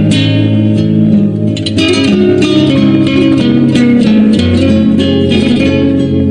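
Instrumental music led by plucked guitar, a steady run of picked notes over a held bass line.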